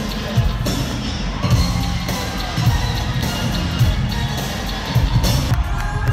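Live pop concert music played loud through an arena sound system, with a heavy bass beat, while the crowd cheers and screams along.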